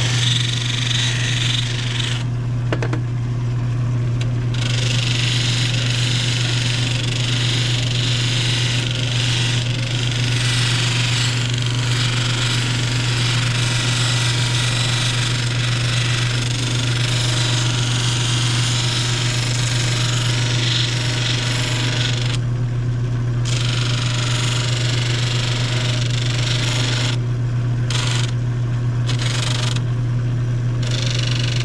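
A shoe finishing machine's motor runs with a steady hum. A hard bar of Yankee wax, and then a boot's sole edge and heel, are pressed against its spinning wheel of stacked leather, making a rushing friction sound. The friction melts the wax into the edges. The rushing stops briefly a few times, about two seconds in and again near the end, as the work is lifted off.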